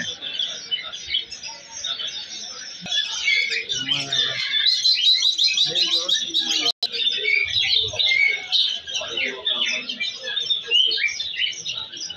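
A crowd of small caged birds chirping together: many short, high, overlapping chirps with no pause. The sound drops out for an instant a little past halfway.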